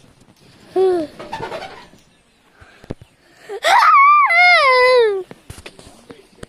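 A girl's voice: a short vocal sound about a second in, then a long high-pitched squeal a little past halfway, its pitch rising, wavering and then falling away over about a second and a half. Light knocks of the phone being handled in between.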